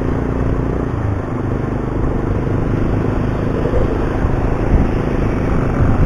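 Yamaha Byson motorcycle's single-cylinder engine running at a steady cruise, with wind and road noise over it.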